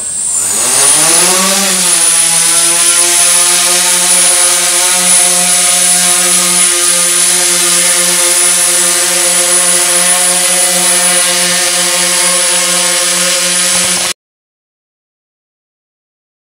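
DJI S900 hexacopter's six electric motors and propellers spooling up with a rising whine as it lifts off, then holding a steady, loud multi-tone hum in hover while carrying about 17.2 lb, near its 18 lb limit. The sound cuts off suddenly about fourteen seconds in.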